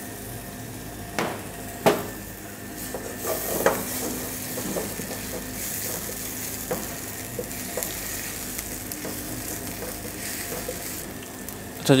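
Chopped garlic sizzling as it sautés in olive oil in a non-stick frying pan, stirred with a wooden spatula. A few sharp knocks of the spatula on the pan come in the first four seconds over the steady sizzle.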